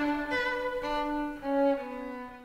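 Bowed strings playing slow, held notes in two parts, the lower part stepping down twice.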